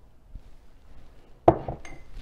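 A metal spoon stirring stew in a crock pot, knocking sharply against the pot once about a second and a half in, followed by a few lighter clinks.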